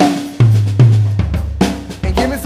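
A jazz band's drum kit plays a short break, the "boom boom" the singer calls for: bass drum and snare hits with cymbals, over low held bass notes.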